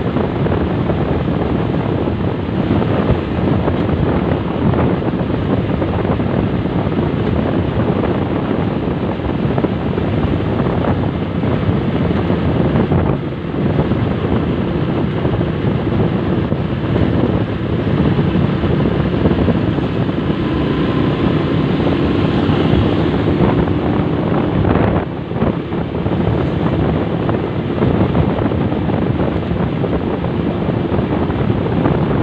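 Wind buffeting the microphone of a moving motorcycle, with the motorcycle's engine running steadily underneath.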